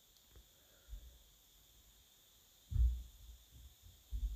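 A steam iron set up on its heel on a padded ironing board: one dull thump nearly three seconds in, after a softer knock about a second in.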